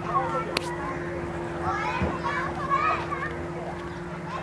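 Children's voices calling and shouting at play in the background, loudest in the middle, over a steady low hum.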